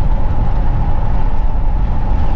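Steady road and engine rumble inside a Chevy Tahoe's cabin while it cruises at about 45 mph.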